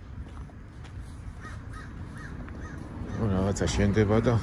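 A crow cawing: a quick run of about five short caws around the middle, over a steady low background rumble. A person's voice starts near the end and is the loudest sound.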